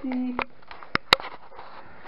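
A short voiced sound, then two sharp clicks about a second in, the second louder.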